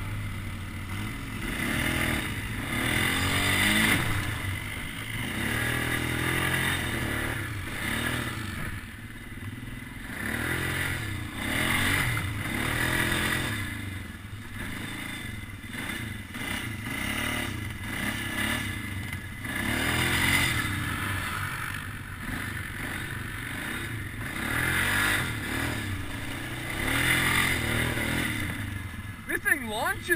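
ATV engine revving up and easing off again and again, about every two seconds, as the quad is ridden over rough trail, with a quick sharp rev near the end.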